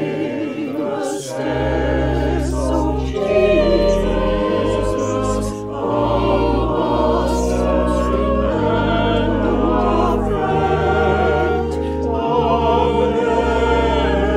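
A choir singing a hymn, wavering sung lines over held low accompaniment notes that change every second or two.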